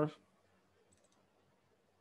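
A brief cluster of faint computer mouse clicks about a second in, as a file is opened, with a man's voice trailing off right at the start.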